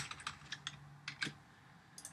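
A few faint computer keyboard keystrokes in the first second or so, as a typed line of code is finished and the file saved.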